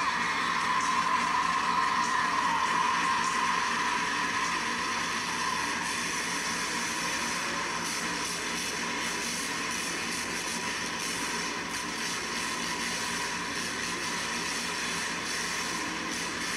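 Monster truck supercharged V8 engines running hard on an arena floor, picked up by a phone as a steady, harsh, distorted noise that is a little louder in the first few seconds.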